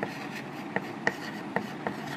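Chalk writing on a blackboard: irregular sharp taps and short scratchy strokes as letters are formed, with one of the sharpest taps about a second in.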